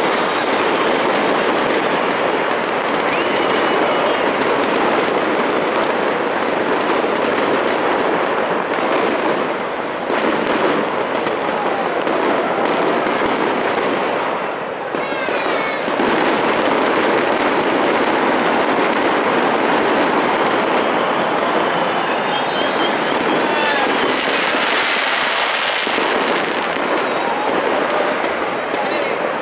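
Aerial fireworks and firecrackers going off in a continuous crackle of many small bursts, over a crowd's voices.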